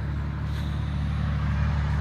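Road traffic noise: a vehicle approaching on the wet road, growing steadily louder over a constant low hum.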